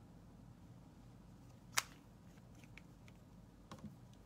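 Quiet room hum with one sharp click about two seconds in, followed by a few faint ticks.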